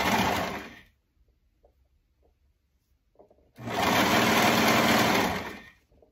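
Brother overlocker (serger) stitching a seam through knit fabric, running in two spurts: one that stops about a second in, then a steady run of about two seconds starting past the middle.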